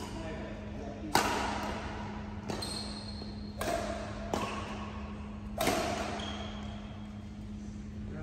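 Badminton rackets striking a shuttlecock in a doubles rally: about five sharp hits roughly a second apart, each ringing on in the hall's echo, the first the loudest.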